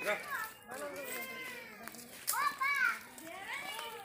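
Children's voices calling and chattering, loudest a little past the middle.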